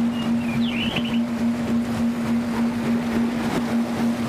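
Sea ambience: a steady wash of waves under a single held low drone tone, with a short bird call in the first second.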